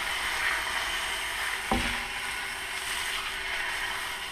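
Ribeye steak frying in oil in a nonstick pan on a gas stove, a steady sizzling hiss. A single short knock comes about halfway through.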